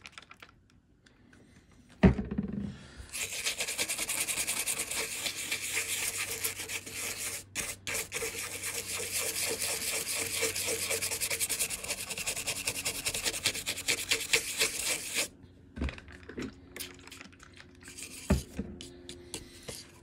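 White toothbrush scrubbing a small fibre eyelet board from a tube amp, wet with cleaner: a fast, steady, scratchy brushing. It starts after a knock about two seconds in and runs for about twelve seconds, then gives way to a few lighter strokes and knocks near the end.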